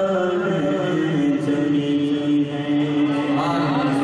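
Men's voices chanting a naat (Urdu devotional poem) unaccompanied, holding long steady notes. A new phrase starts near the end with its pitch sliding upward.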